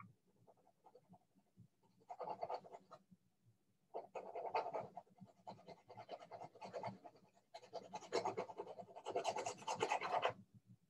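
Graphite pencil scratching across drawing paper in quick back-and-forth shading strokes, in three spells: a short one about two seconds in, then two long runs from about four seconds on.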